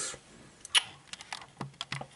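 A series of light clicks and taps: one sharp click about three quarters of a second in, then several quicker, smaller ones toward the end.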